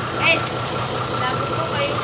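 An engine idling steadily in the background.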